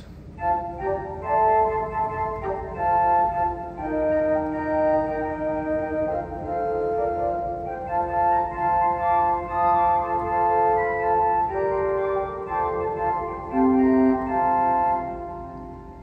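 A 1926 Estey pipe organ plays a short passage of held chords on its four-foot Traverse Flute stop. The notes start about half a second in and die away just before the end.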